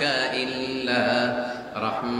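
A man's voice reciting a Quranic verse in a slow melodic chant, holding long notes and sliding between pitches, with a brief breath pause near the end.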